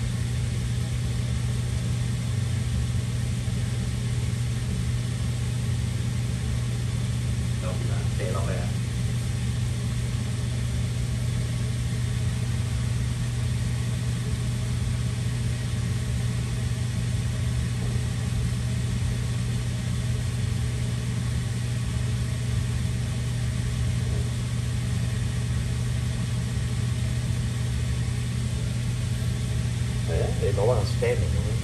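Steady low mechanical hum of a running kitchen appliance motor, with a brief faint voice about eight seconds in.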